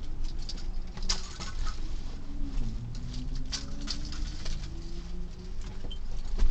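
Steady low rumble in a car cabin, with scattered light clicks and taps over it.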